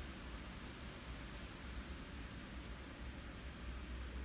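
Faint scratching of a paintbrush dabbing gouache onto paper, over a steady low hum and hiss.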